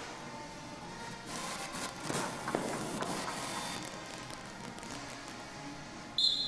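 Marching-band music heard across a large hall. A louder, clattering, noisy stretch runs through the middle for about two and a half seconds.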